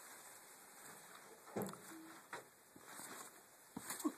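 A few faint soft thumps from a backyard trampoline mat as a person bounces and does a backflip on it, one about a second and a half in and a couple near the end, over a quiet hiss.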